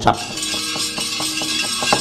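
Soft gamelan accompaniment for a wayang kulit play: sustained metallophone tones held at several pitches. From about half a second in, a quick, even run of metallic clicks sounds over them.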